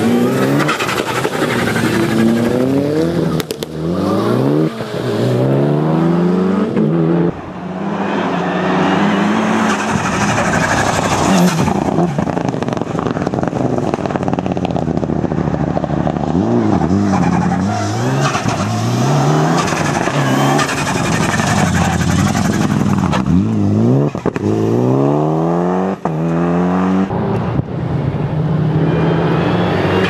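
Mitsubishi Lancer Evolution rally car's turbocharged four-cylinder engine revving hard as it accelerates past, its pitch climbing and dropping back with each gear change, heard over several passes.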